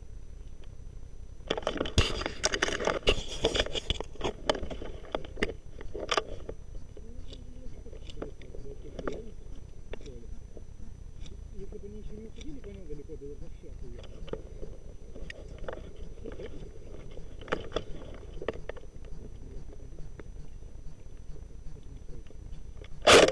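Rustling and crackling of a player moving with a rifle held close to the microphone, dense for a couple of seconds and then scattered clicks and scrapes. Faint distant voices come in around the middle.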